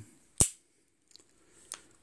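One sharp metallic click from a Ruger Blackhawk .357 Magnum single-action revolver's action as it is handled, followed by two faint clicks.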